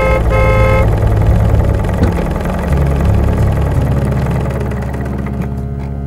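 A car engine running steadily at idle. Right at the start the car horn sounds twice, a short beep and then a longer one.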